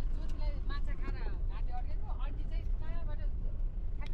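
Steady low rumble of a vehicle driving over a rough dirt road, heard from inside the cabin.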